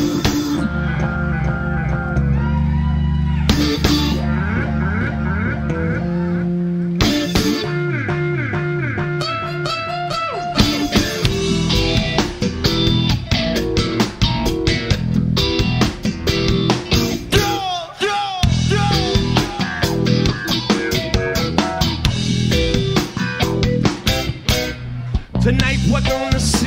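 Live reggae-rock band playing an instrumental passage: held bass and guitar chords, with the drum kit coming in busily about seven seconds in and a guitar line with sliding, bent notes over it.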